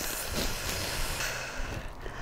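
A person's long breathy exhale, fading out about a second in.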